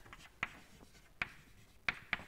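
Chalk writing on a blackboard: three sharp taps of the chalk striking the board, with faint scratching between them.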